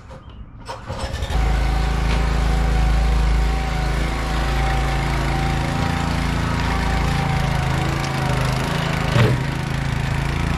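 Engine of a Brouwer Brutus ride-on lawn roller starting about a second in, then running steadily as the roller moves. A single thump comes near the end.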